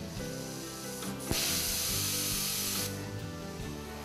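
Thermal Dynamics nitrogen water-mist plasma torch hissing for about a second and a half as it marks a letter into aluminum plate. The hiss starts abruptly and cuts off, over a bed of background music.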